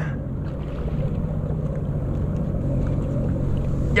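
Sea-Doo Fish Pro jet ski engine idling with a steady low hum.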